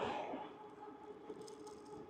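Faint steady hum and thin whine of an e-bike riding along a road, with light road noise.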